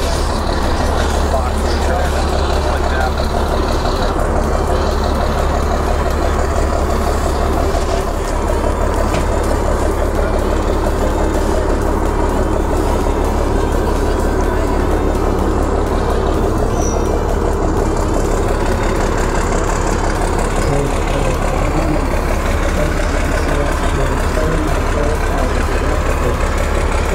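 A large engine running steadily, over a constant low rumble.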